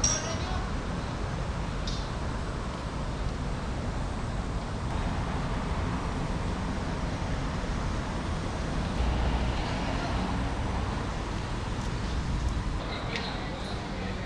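Outdoor city ambience: a steady low rumble of traffic with faint voices and a few sharp clicks.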